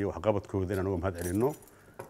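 A man speaking Somali into a lapel microphone, pausing after about a second and a half.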